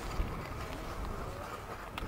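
Steady low rumble and hiss of a Class QJ steam locomotive standing at the coaling stage, with faint distant voices and a couple of sharp clicks near the end.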